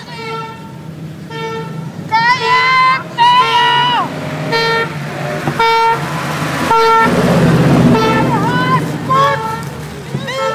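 A vehicle horn sounding a series of short toots, roughly one a second, with people shouting in between. A brief rush of noise comes about seven seconds in.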